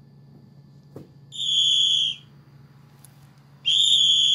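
A whistle blown in two long, steady blasts, the first about a second and a half in and the second near the end. A light tap comes just before the first blast.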